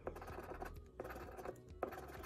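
A plastic scratcher disc scraping the coating off a scratch-off lottery ticket in quick repeated strokes, uncovering the winning numbers.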